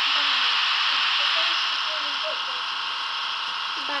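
Model electric locomotive running slowly, its small motor and drive giving a steady high whir, with faint voices in the background.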